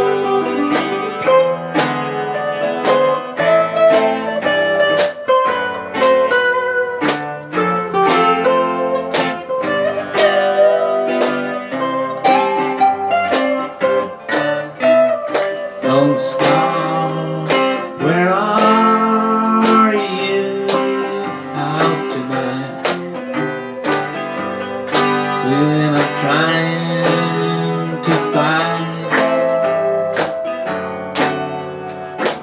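Acoustic guitar played live, a steady flow of picked notes and strums, with a man's singing voice joining in the second half.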